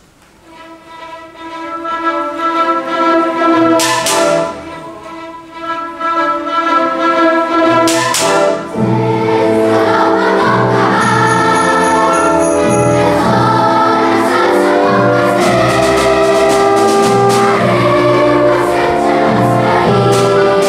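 A school orchestra plays, swelling up from quiet, with two percussion crashes about four and eight seconds in. From about nine seconds in, a large children's choir sings with the full orchestra.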